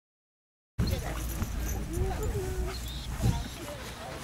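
Silence for the first second, then the field sound cuts in suddenly: wind rumbling on the microphone, with faint gliding vocal sounds over it.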